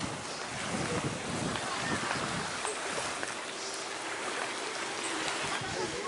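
Steady beach ambience: a hiss of wind and gentle surf, with faint distant voices of people.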